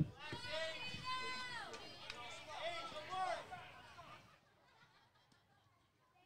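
High-pitched young voices shouting and cheering in long drawn-out calls, fading out after about four seconds. A single sharp thump comes right at the start.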